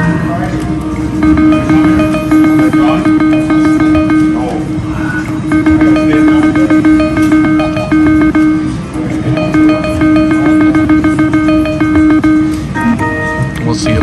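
Video keno machine drawing numbers: a quick, evenly paced run of short electronic tones, one for each number drawn, played twice for two games in a row, over a steady electronic hum. Casino music and voices can be heard behind it.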